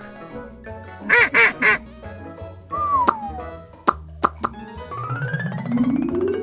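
Cartoon duck quacking three times in quick succession over children's background music, followed by a falling whistle-like glide and a few sharp clicks.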